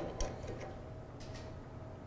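A few faint, irregular metal clicks as hand wrenches are set on and worked against the bolt of a puller.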